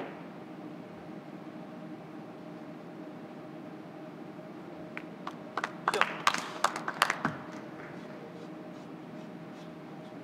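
Carom billiard balls clicking against each other and the table's cushions in a quick run of sharp knocks about five to seven and a half seconds in, as a three-cushion shot is completed and scores. A steady low hum runs underneath.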